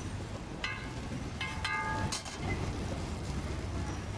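Steady low rumble of street traffic, with a few short ringing metallic clinks in the first two seconds and a sharp tap just after, from a metal spatula working roti on a flat steel griddle.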